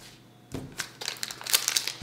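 Foil wrapper of a Pokémon card booster pack crinkling as hands tear it open. It starts about half a second in and grows busier toward the end.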